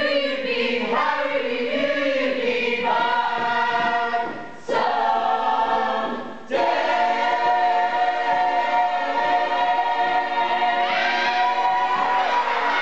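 A musical-theatre ensemble of men's and women's voices singing together in harmony, in a series of held notes that end in one long chord lasting several seconds, with a change near the end.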